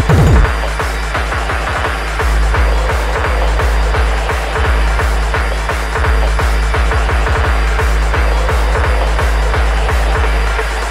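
Hardtek (free tekno) electronic dance music from a DJ mix: a fast, steady kick-drum rhythm over bass, with the heaviest kicks in the first half second.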